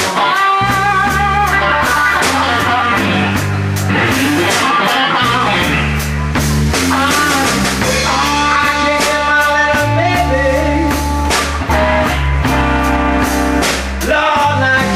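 Live blues-rock trio playing an instrumental passage: electric guitar lead lines with string bends over Fender electric bass and drum kit.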